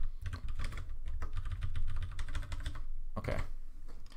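Typing on a computer keyboard: a quick run of key clicks that goes on almost without a break, with a short lull near the end.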